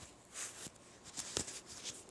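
Faint rustle of cotton yarn being drawn through crochet stitches as the tail is pulled through with a yarn needle, with a few light ticks and one sharper tick just under a second and a half in.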